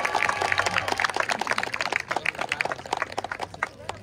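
A small crowd clapping by hand, rapid uneven claps that die away near the end.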